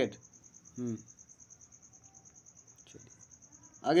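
A cricket trilling steadily: a faint, high-pitched run of fast, even pulses.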